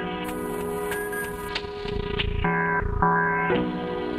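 Live sampler beat played on a Roland SP-404SX and a Microgranny sampler: a looped phrase of held pitched notes with a few sharp hits and two low thumps in the second half.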